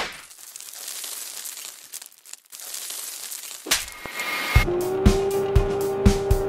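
Intro sound effects: hissy whooshing noise in two sweeps, then from about four and a half seconds in, music with a kick-drum beat about twice a second under a held note.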